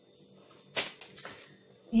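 Groceries handled on a kitchen table, a cardboard box picked up: one short, sharp scrape just under a second in, followed by a few fainter ones.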